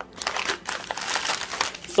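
Clear plastic bag of in-shell sunflower seeds crinkling as it is picked up and handled, a dense run of crackling lasting over a second.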